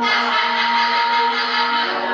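A choir of many voices making a dense, noisy wash of breathy vocal sound, with a few steady held notes running through it.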